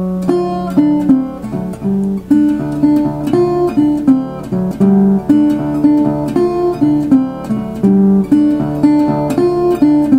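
Resonator guitar in open D tuning, fingerpicked with a thumbpick and fingerpicks: a swing-eighth blues shuffle with a constant, repeated thumbed bass note under short treble licks, a few notes gliding down in pitch.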